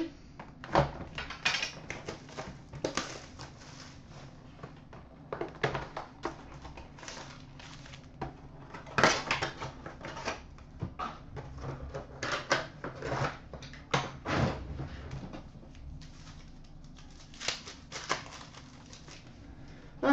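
Hands opening a box of Panini Titanium hockey cards and tearing into the packs: irregular crinkling, tearing and sliding of pack wrappers, cardboard and cards, with small taps as things are set down.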